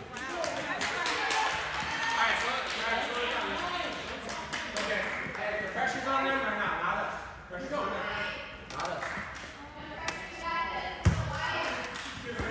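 Indistinct chatter of players and spectators in a gym, with a few basketball bounces on the hardwood floor.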